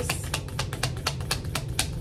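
A deck of tarot cards being shuffled by hand: a rapid run of crisp card clicks, about ten a second.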